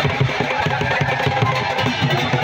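Dhol barrel drums beaten in a fast, even rhythm of about four strokes a second, over the noise of a large crowd.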